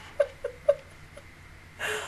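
A woman's quiet, breathy laughter: three short laugh pulses in the first second, trailing off, then a quick intake of breath near the end.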